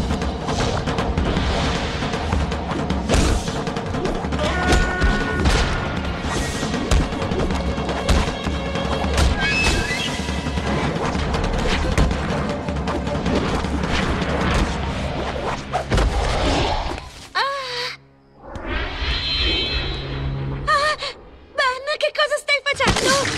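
Action-cartoon score of a fight scene, with heavy low booms and impact thuds. Near the end it drops away briefly, then returns as wavering, gliding tones.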